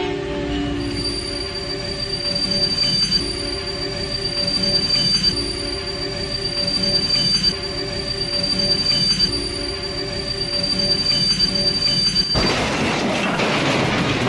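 Train sound effect: a train running on rails, with a steady high-pitched wheel squeal over a pulsing low rumble. Near the end it cuts abruptly to a louder, harsh crashing noise as the trains collide.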